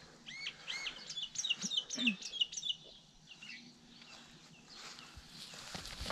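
A songbird sings a quick phrase of high, arching notes lasting about two and a half seconds. Rustling in the grass follows near the end.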